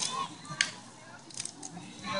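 Faint voices of children and adults on an open playing field. A sharp click comes a little over half a second in, and a few lighter clicks follow near the end.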